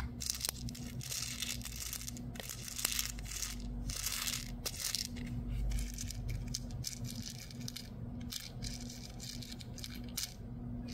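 Small nail-art rhinestones clicking and rattling against each other and a plastic triangle sorting tray as fingers tilt and stir them, in uneven bunches of small clicks.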